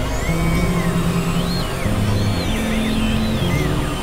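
Experimental electronic synthesizer music: a low drone moves between held notes in steps, while higher tones glide up and down over it.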